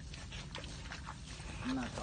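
Water buffalo tearing and chewing grass at the pond's edge: a few short crisp rips and crunches over a low steady rumble.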